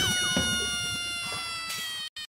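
A long, drawn-out animal call used as a comic sound effect, one sustained cry slowly falling in pitch and fading, over a low crackle.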